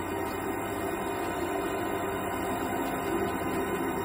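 Ambient drone music: a steady, dense wash of held low tones that swells slowly.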